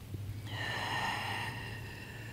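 A person's slow, audible breath through the nose, starting about half a second in and fading away.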